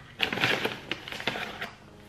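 Crinkling of a plastic supplement pouch as a small plastic scoop digs into the powder inside: a run of crackly rustles lasting about a second and a half, fading near the end.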